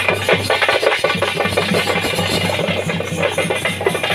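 Loud drum-led music with a fast, busy beat of closely spaced strokes.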